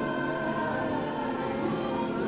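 Worship song with a choir singing held notes over instrumental backing.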